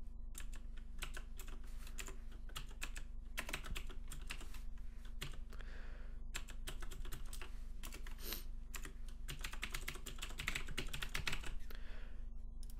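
Typing on a computer keyboard: a steady run of irregular keystroke clicks, with short pauses between bursts.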